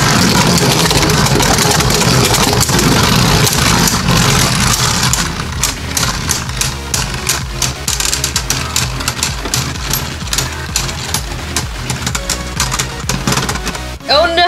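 Two Beyblade Burst Turbo spinning tops, Hercules H4 and Salamander S4, whirring on the plastic floor of a stadium right after launch. From about five seconds in they clash over and over in quick clicks and rattles as they slow and wobble against each other, winding down to a stop near the end.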